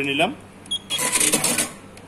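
Short electronic key beep from the control panel of a Juki LK-1900A computer bartacking machine as the Ready key is pressed, followed about a second in by a burst of mechanical noise lasting under a second.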